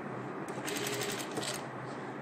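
Domestic sewing machine stitching through tulle in a short run of rapid stitches. It starts about half a second in and stops shortly before the end.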